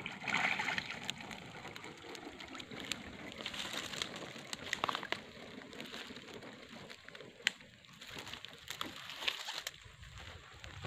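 A wire-mesh fish trap is hauled out of a ditch: water splashes and sloshes in the first second. It is then dragged through dry palm fronds, with rustling, scraping and scattered sharp clicks.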